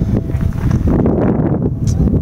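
Wind buffeting the camera's microphone, a loud, steady low rumble, with a few brief clicks near the end.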